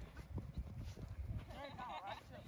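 Soft, irregular thuds of footsteps running on grass, with a faint distant voice shouting near the end.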